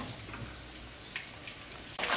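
Chicken feet deep-frying in a wok of hot oil: a faint, steady sizzle with scattered light pops, and a small tick a little past the middle.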